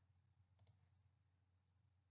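Near silence, with two or three very faint clicks about half a second in.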